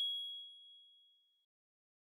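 A single high-pitched ding from a logo sound sting, struck once and ringing out, fading away about a second and a half in.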